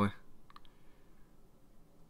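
The end of a man's spoken word, then two or three faint clicks in quick succession about half a second in, then quiet room tone.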